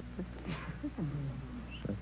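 Faint, low voices murmuring in short broken bits, the contestants conferring quietly over their answer, over a steady low hum.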